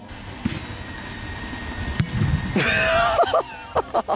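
Outdoor background rumble with two dull thumps in the first two seconds, then a burst of excited shouting from the players about two and a half seconds in.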